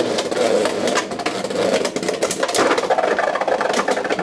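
Two Beyblade X spinning tops, Wizard Arrow High Needle and Leon Claw, whirring across a plastic stadium with a steady grinding rattle. Their metal blades clash and clack many times against each other and the stadium walls, and the battle ends in a burst, with one top knocked apart.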